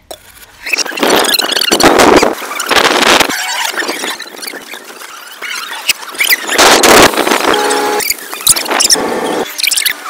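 Video audio played backwards at high speed as a rewind effect: a loud, garbled, rapidly warbling jumble in short choppy chunks.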